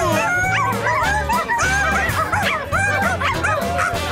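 Many puppies yipping and whining at once, short overlapping high calls, over background music with a steady pulsing bass.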